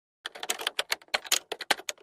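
Typewriter typing sound effect: a quick, irregular run of key clacks, about eight to ten a second, starting a moment in. It accompanies on-screen text being typed out letter by letter.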